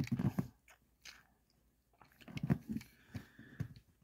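Fingers handling a small die-cast toy car close to the microphone: faint scattered rubbing and clicking in a few short clusters.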